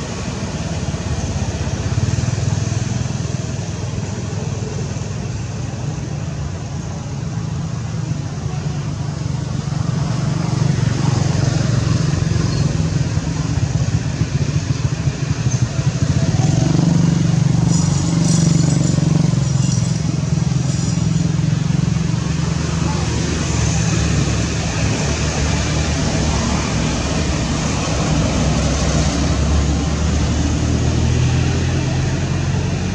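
A steady low rumble, like a motor running nearby, growing louder from about ten seconds in.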